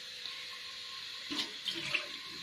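Cauliflower florets and green chillies sizzling steadily in hot oil in a karai, with a couple of short scrapes or knocks in the second half.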